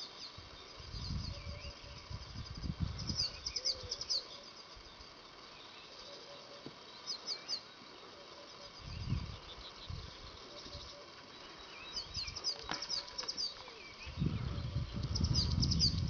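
Small birds singing outdoors: quick runs of short, high chirps, repeated several times. Intermittent low rumbles underneath, loudest near the end.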